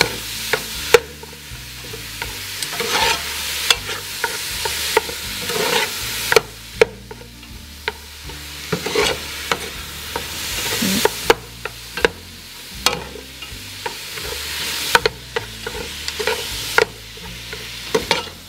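Minced meat frying in hot oil in an aluminium pot, sizzling as it is stirred and tossed with chopsticks and a metal ladle. The ladle clinks sharply against the pot every couple of seconds.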